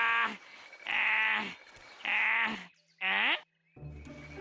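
A cartoon man's voice giving three short wordless cries in a row, the last one falling in pitch, as he seethes in frustration.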